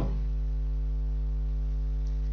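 Steady electrical mains hum, a constant low buzz that carries on unchanged through the pause in the narration.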